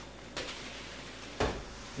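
Two knocks about a second apart, the second a deeper thud: a thrown boccia ball hitting the wooden floor on a shot that misses its cone.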